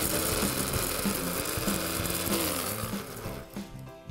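Cuisinart 350-watt compact blender's motor running with the small bladed grinding cup, grinding dried goji berries into powder: a steady whirr that winds down near the end.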